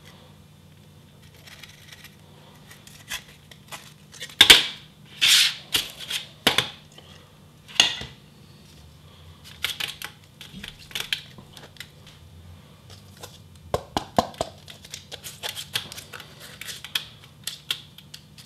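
A petri dish and a disc of ice knocking, clicking and scraping on a metal baking tray as the frozen salt-water samples are turned out and worked by hand, the rock-salt one frozen solid. Scattered sharp knocks and short clattering scrapes, loudest about four to six seconds in, then a run of lighter clicks, over a low steady hum.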